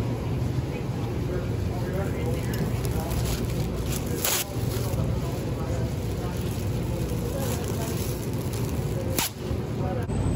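A thin plastic produce bag being pulled off a roll dispenser, with two short sharp snaps, about four seconds in and near the end, over a steady low store hum.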